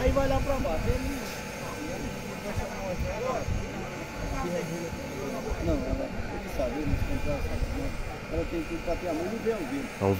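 Background chatter of several people talking at a distance, with overlapping voices and no clear words, over a low steady rumble.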